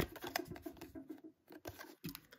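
Pokémon trading cards being handled: light scrapes and small clicks of card stock sliding between the fingers and against each other, with a short pause a little after the middle.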